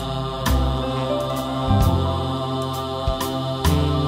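A Korean folk-style male vocal sings the song's line in long held notes over band accompaniment, with a deep bass and several sharp percussion hits.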